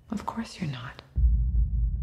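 Film soundtrack: a short hushed line of dialogue, then a sudden deep low rumble that starts about a second in and keeps going.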